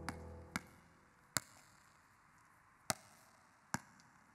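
A basketball bouncing on an outdoor hard court: several sharp, single bounces at uneven intervals, over a faint background. Background music fades out in the first half-second.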